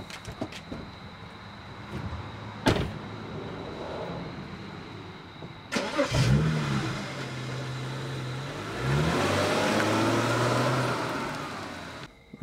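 Two car doors slam shut, then a BMW coupe's engine starts about six seconds in, flaring up and settling to a steady idle. Near the end it revs up as the car pulls away.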